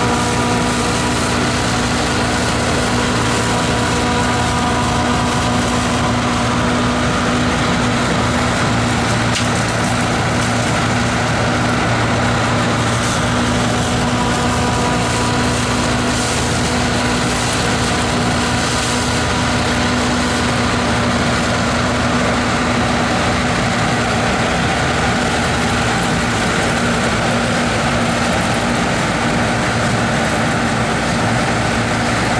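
Bizon combine harvester running at a constant, steady speed while cutting and threshing a pea crop that lies flat on the ground.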